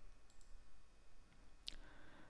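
A single faint computer mouse button click, about three-quarters of the way through, over low room tone.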